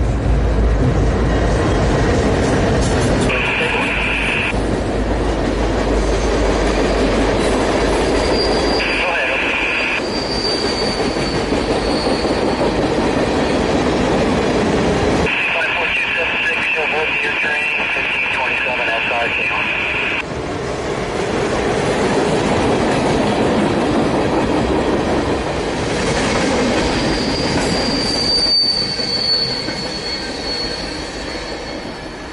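Diesel freight locomotives, led by an EMD SD40-2, rumbling heavily as they pass over a river bridge. This is followed by loaded tank cars rolling across with steady wheel noise. High-pitched wheel squeal comes and goes in several stretches, the longest about halfway through.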